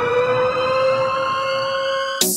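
A siren-like tone in a music track's intro, holding at a steady pitch after a rising glide, over a faint steady pulse.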